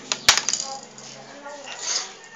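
A small metal object hits a hard surface: two sharp clinks in quick succession about a quarter second in, then a brief rattle.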